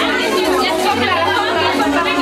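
Party dance music with a repeating bass line, heard under the chatter of many guests in a large room.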